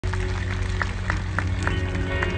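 Live rock band playing through a festival PA: sustained electric guitar and bass notes over a steady ticking beat, about three or four ticks a second.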